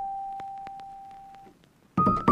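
Background music: a single electric-piano note ringing and fading away over about a second and a half, then a short near-silent pause before the next notes.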